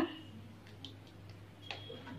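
Faint scattered ticks over a low steady hum from a steel pot of water heating on an electric cooktop, with a short high tone near the end.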